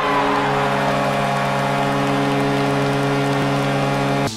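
A loud, steady electronic drone of several held tones from a video intro sound effect, sustained unchanged without rhythm.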